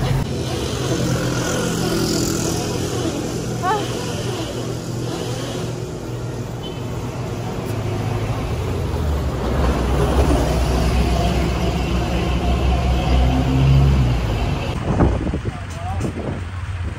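Street traffic: a motor vehicle's engine running close by as a steady low rumble, swelling louder in the second half. A brief voice sounds early on.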